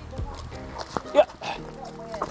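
Doberman Pinscher whining with excitement as it lunges on its leash: short rising and falling whines with a few sharp clicks, over steady background music.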